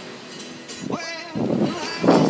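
Beach sound: a brief rising call from a voice about a second in, then a loud rushing noise of breaking surf and wind that swells near the end.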